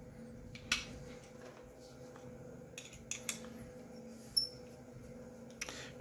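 A few faint clicks and taps from handling printed ABS parts while a socket head screw is fitted through a mounting block, over a steady low hum.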